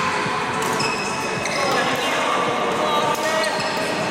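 Badminton rackets striking a shuttlecock, a few sharp pops spaced about a second or more apart, with short squeaks of shoes on the court floor and voices in the background.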